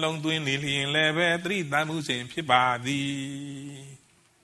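A man's voice chanting Buddhist verses in a slow, near-monotone recitation, the pitch stepping slightly lower. It ends on a long held note that fades out just before the end.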